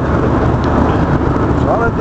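Steady roar of jet airliner cabin noise in flight: engine and airflow noise filling the cabin.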